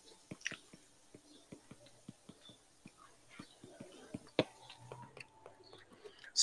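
Faint, irregular small taps and ticks of a stylus on a tablet screen during handwriting, with one sharper tap about four and a half seconds in.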